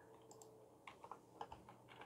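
Faint computer keyboard key presses: four separate light clicks about half a second apart.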